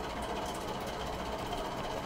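Steady background noise: a low hum with a faint even hiss, with nothing else happening.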